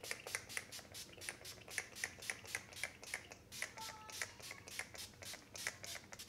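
Urban Decay All Nighter setting spray pumped over and over, a quick run of short misting sprays at about four a second.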